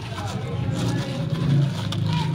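Plastic courier bag crinkling and rustling as it is pulled open by hand, over a steady low hum that swells briefly about halfway through.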